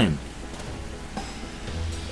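Steady hiss of rain coming in through an open window, heard in a pause between speech.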